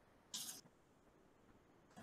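Near silence: room tone, with one brief faint hiss about a third of a second in.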